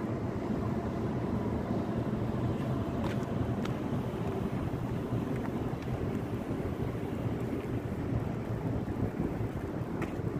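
Wind buffeting the microphone outdoors: a steady low rumbling noise with no clear pitch.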